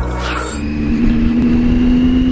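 Intro music cuts off about half a second in, giving way to a Triumph Tiger 800's three-cylinder engine running at a steady pitch as the motorcycle cruises.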